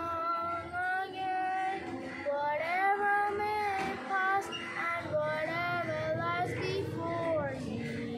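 A girl singing solo, a slow worship song with long held notes.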